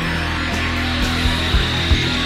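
Instrumental psychedelic space-rock: a dense wash of electric guitar over sustained low notes, with irregular low thumps of a beat. A high held tone enters about halfway through.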